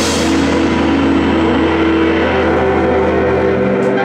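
A rock band's closing chord ringing out: electric bass and guitars held over a fading cymbal crash, with the low bass note dropping away near the end.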